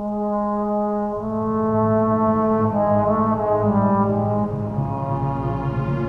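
Solo trombone playing slow, sustained notes with the orchestra, moving to a new note every second or so.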